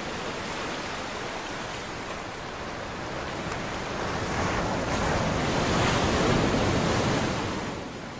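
Sea surf: a steady wash of breaking waves that swells louder about halfway through and eases off near the end.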